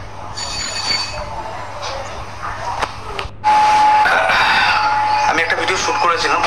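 A person's voice, then after a brief break about halfway through, a loud steady single high tone that holds under continuing talk.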